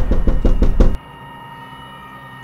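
A fast run of loud, sharp knocks, about seven a second, that stops about a second in, leaving a quieter held tone.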